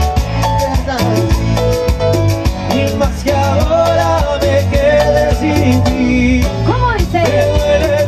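Live tropical dance band playing with a steady percussion beat, bass and keyboards, and a male singer singing over it.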